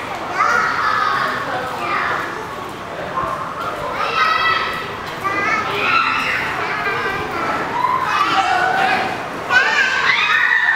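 Children's voices: several kids talking and calling out in high voices, one after another throughout.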